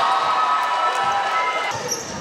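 Basketball game sounds in a gym: a ball bouncing on the hardwood court, with shouting voices held for about the first second and a half.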